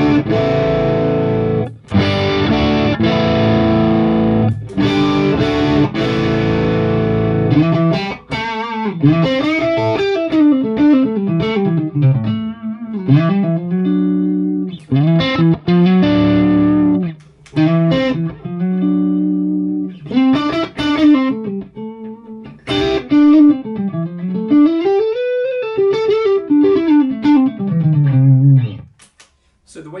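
Stratocaster-style electric guitar played through a Fractal Axe-FX III amp modeller. The first eight seconds or so are strummed chords, then come single-note lead lines with bends and slides. The playing stops a second before the end.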